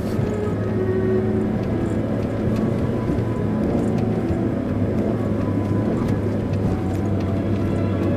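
Steady engine drone of a Mitsubishi Pajero Mini kei SUV heard from inside the cabin as it drives on a snowy dirt road, with background music laid over it.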